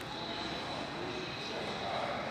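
Steady background noise of a large indoor room: a constant hiss with a faint high whine, and faint distant voices.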